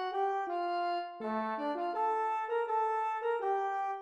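Computer playback of a huayño tune from a trumpet score. The melody is played in harmonized parallel lines with clean, synthetic-sounding tones. The phrase breaks off briefly about a second in, then the tune goes on.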